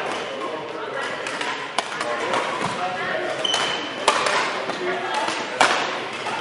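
Badminton rackets hitting a shuttlecock in a rally: three sharp hits about two seconds apart, each ringing briefly in the large hall. A brief high squeak comes between the second and third hits.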